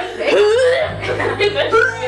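Young women laughing and chattering, the voices echoing a little off the bathroom tiles.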